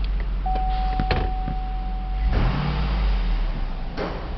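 The Escalade's 6.0-litre V8 idling with a steady low hum, while a steady electronic warning tone sounds for about two seconds, starting about half a second in. A couple of sharp clicks come around the first second, and a wider rush of noise rises a little after two seconds.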